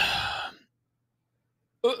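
A person's voice: the last words of a sentence trail off into a breathy sigh. After about a second of complete silence, a drawn-out 'Oh' begins near the end.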